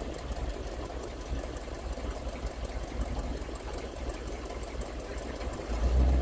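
Classic Chevrolet Nova's engine running at low speed as the car rolls slowly past, a steady low rumble with a quick, even beat that grows louder near the end.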